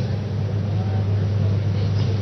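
A steady low hum with an even hiss of room noise beneath it, unchanging throughout.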